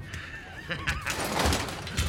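A man's short, breathy burst of laughter about a second in.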